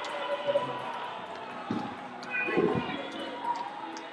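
Lively church worship: voices calling out in a reverberant hall, with two deep thumps around the middle.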